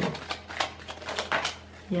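A tarot deck being shuffled by hand: a quick, irregular run of soft card slaps and riffles that dies away near the end.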